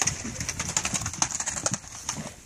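Horse's hooves crunching in snow at a trot, a quick run of sharp crunches with a soft low beat about twice a second.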